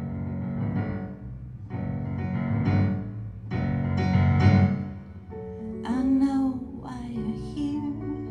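Korg digital piano playing sustained chords, struck about every two seconds. A woman's singing voice comes in over the keyboard about six seconds in.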